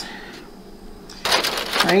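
Clear plastic zip-top bag crinkling and rustling as it is handled, a loud burst starting a little past halfway.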